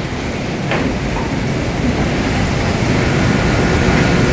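Steady low rumbling noise of the lecture hall's room tone and ventilation, with no speech; a faint short click comes just under a second in.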